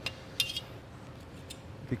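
Metal scraper clinking against a metal cold table while folding a slab of cooling sugar candy: one sharp, ringing clink about half a second in, then a couple of faint taps.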